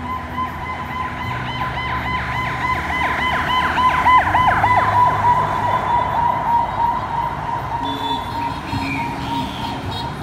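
A siren-like warbling tone over street noise. Its pitch dips and recovers about three times a second for a few seconds, loudest around the middle, over a steady high tone.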